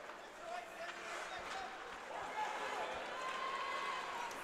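Faint ice hockey rink sound during play: skates on the ice, a few faint stick-and-puck knocks, and distant voices from players and spectators echoing in the arena.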